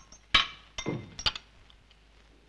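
Cups and saucers clinking as they are handed round: one sharp ringing clink about a third of a second in, then several lighter clinks over the next second.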